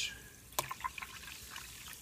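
A sharp click about half a second in, then apple juice being poured from a bottle into a plastic measuring cup of fizzing club soda.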